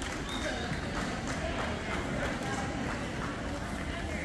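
Indistinct chatter of voices echoing in a large hall, with faint footsteps and paw-steps on the floor.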